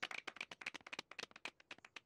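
A few people clapping quietly, the claps thinning out and dying away near the end.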